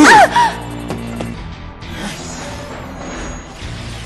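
A male cartoon villain's short, sneering vocal sound with a sliding pitch, heard at the very start and loudest. Soft background music follows for the rest.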